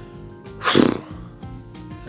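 Background music, with one short, loud, rough vocal outburst from a man less than a second in: a growl-like shout rather than words.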